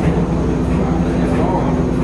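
Heinrich Lanz steam engine running with a steady low rumble, with people talking in the background.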